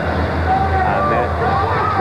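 A man's voice, most likely the television commentator, over a steady background of arena crowd noise and a low hum.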